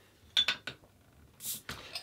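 A bottle opener clicks against the metal crown cap of a glass beer bottle. About a second and a half in there is a short hiss of escaping gas as the cap is prised off.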